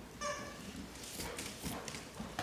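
A large dog's claws clicking on a hardwood floor as it trots about, with a short high squeak about a quarter second in.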